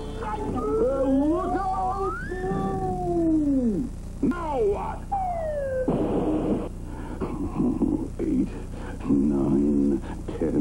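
Cartoon soundtrack effects: gliding tones climb and then swoop down over the first four seconds, with another falling swoop just after. About six seconds in comes a short, noisy splat as wet cement lands on a figure, followed by short pitched sounds.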